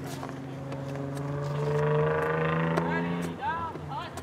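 A passing vehicle's engine running steadily, pitch creeping up as it grows to its loudest about two seconds in, then dropping away a little after three seconds. Short shouted calls from players follow near the end.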